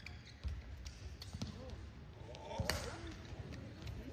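Badminton rally: three sharp racket strikes on the shuttlecock about a second apart, with players' shoes squeaking on the court, over a murmur from the arena crowd.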